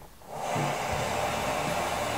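Kitchen faucet turned on about half a second in, tap water then running steadily into a stainless steel sink.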